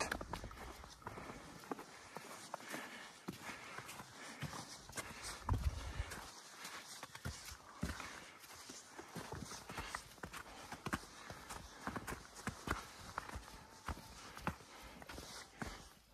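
Footsteps on a snow-covered mountain trail: a run of irregular short crunches and scuffs as a hiker walks along the path.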